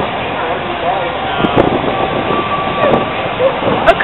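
Street noise of road traffic going by, with faint voices talking in the background.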